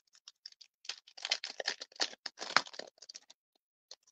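Stiff plastic packaging of a sealed die set being handled: a quick run of small crinkles and clicks, stopping shortly before the end.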